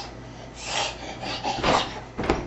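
A toddler jumping on a bed: bedding and mattress rustling and scuffing in a few short bursts, then a sharper thump near the end as he tumbles and bumps himself.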